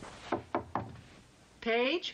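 Three quick knocks on a door, about a quarter second apart.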